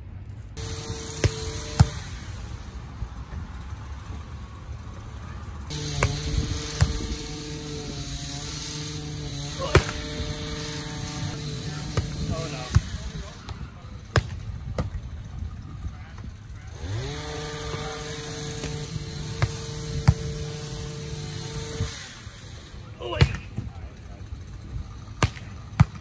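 A volleyball being passed and hit back and forth between two players, with sharp slaps of hand and forearm contacts every few seconds. Twice a steady motor hum runs in the background for about five or six seconds. The second time it rises in pitch as it starts.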